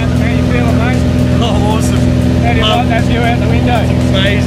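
Steady drone of a small skydiving plane's engine heard from inside the cabin, with people talking indistinctly over it.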